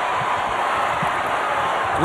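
Steady crowd noise in a packed basketball arena during play.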